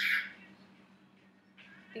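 A young woman whispering: a short breathy burst at the start, then faint whispering again near the end, with a low steady hum underneath.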